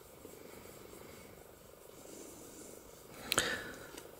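Quiet room with faint low rustling, and one short soft noise a little over three seconds in.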